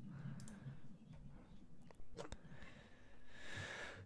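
Faint room noise with a low hum and a few soft, sharp clicks.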